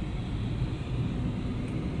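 Steady low rumble of a car's engine and tyres on the road, heard inside the moving car's cabin.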